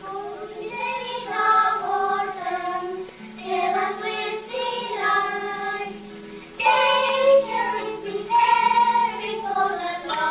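A group of young children singing a song together in held, melodic notes, over a steady low hum.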